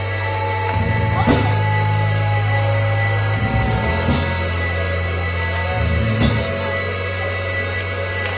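Church worship band playing softly: an electric keyboard holds low sustained chords that change every few seconds, with two sharp drum or cymbal hits, about a second in and about six seconds in.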